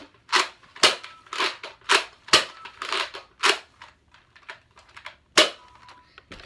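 A run of about eight short, sharp pops, roughly one every half-second for the first four seconds, then a pause and a last loud pop near the end.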